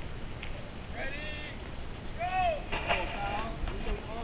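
Distant people calling out in short, high shouts twice, with a few sharp knocks about three seconds in.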